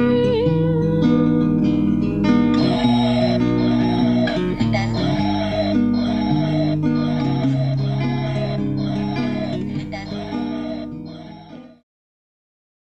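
Soundtrack music with guitar, fading out to silence near the end.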